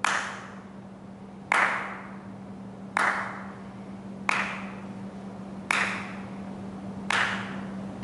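Slow single hand claps, six evenly spaced strokes about one and a half seconds apart, each followed by a long echo in a large hard-floored hall. A steady low hum runs underneath.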